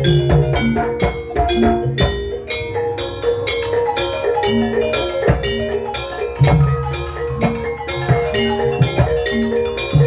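Gamelan-style ensemble accompanying a jaranan (kuda lumping) horse dance: tuned metal percussion struck in a fast, busy pattern over drum strokes, with deep low notes returning every few seconds.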